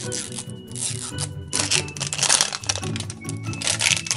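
Plastic wrapping being peeled off a toy surprise ball, crinkling and tearing in several spells, over background music.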